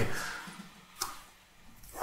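A single computer mouse click about a second in, with a fainter click near the end, over quiet room tone.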